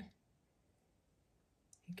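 Near silence: room tone, with one brief faint click near the end.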